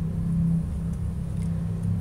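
Steady low rumble with a faint hum in the background, with no speech.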